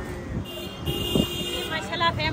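A vehicle horn sounding once for about a second over street noise.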